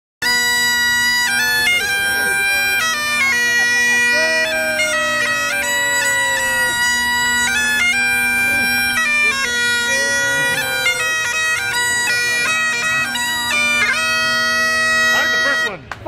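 Bagpipes playing a tune over steady drones, stopping suddenly near the end.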